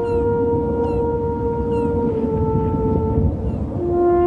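Slow brass horn melody of long held notes, stepping down in pitch about halfway through and again near the end, over a low steady rumble, with a few short high chirps.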